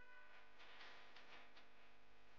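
Near silence: faint background music, with a soft, brief rustle about halfway through as a hand moves over the grated pumpkin and its paper.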